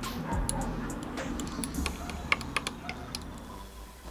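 A thin metal stirring stick clinking and scraping against a small glass jar of liquid silicone, a string of irregular light clicks.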